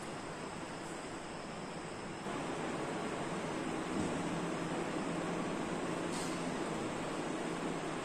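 Steady background noise with no speech, a little louder after about two seconds.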